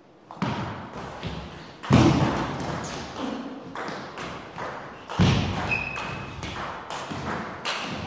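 Table tennis rally: the celluloid ball clicking back and forth off the bats and the table at rally pace. Two heavier thumps stand out, about 2 and 5 seconds in.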